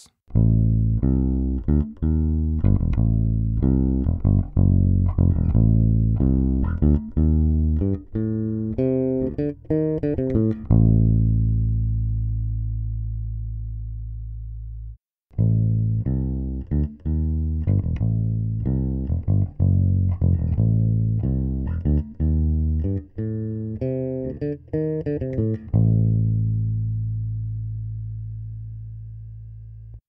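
Electric bass guitar playing a short line of plucked notes that ends on a long held low note left to fade, then the same kind of passage again after a brief gap. It is heard as a blend of a Radial DI direct-box track and an Electro-Voice RE320 microphone track on the bass cabinet, the second pass mixed with more of the microphone and less of the DI.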